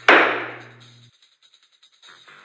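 A single gavel bang sound effect: one sharp strike at the start that rings out and fades over about a second.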